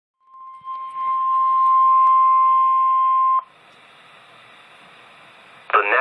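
NOAA Weather Radio 1050 Hz warning alarm tone, the signal that a warning broadcast follows, sounding from weather radio receivers as one steady tone that cuts off suddenly about three and a half seconds in. Faint receiver hiss follows until an automated voice begins near the end.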